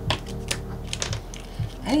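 Tarot cards being handled and shuffled: a string of short, irregular clicks and slaps of card against card. The cards are sticking together.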